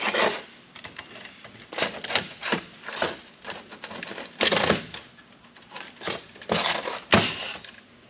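Irregular clicks, knocks and scrapes of metal parts and tools being handled on a steel workbench as a small gold-finger circuit board is worked free of an old computer disk drive.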